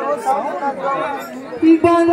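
People talking over one another in a short break in the music. Near the end a sharp drum stroke and a held note come in as the kirtan music starts again.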